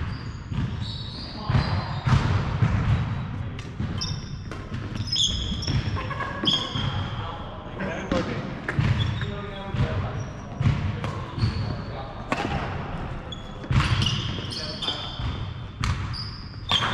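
Badminton doubles rally on a wooden sports-hall floor: repeated sharp racket hits on the shuttlecock, thudding footsteps and short high squeaks of court shoes on the boards, ringing in a large hall.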